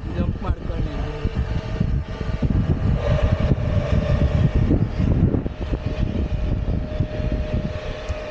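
Wind buffeting an action camera's microphone, a heavy uneven rumble, with a steady held note coming in about three seconds in.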